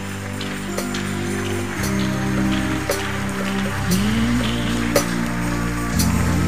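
Keyboard playing held chords that change about two and four seconds in, with a rising slide near four seconds, over a congregation clapping.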